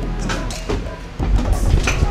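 Knocks, clunks and rustling as an unbolted seat is wrestled out of the car's cabin through the door opening, over a low rumble. The knocks come thicker and louder in the second half.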